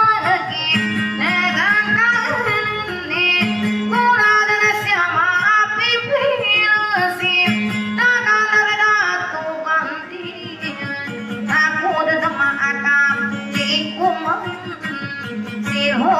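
A song: a high voice singing a sliding, ornamented melody over instrumental accompaniment, with a sustained low note under it.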